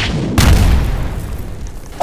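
Cartoon sound effect: a sudden rush of noise, then a deep boom about half a second in that slowly dies away.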